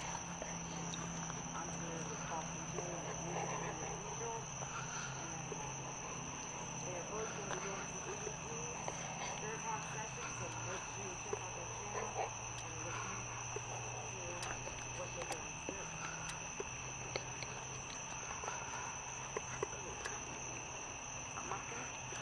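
Night insects calling in one continuous high-pitched tone, with faint, indistinct voices murmuring underneath.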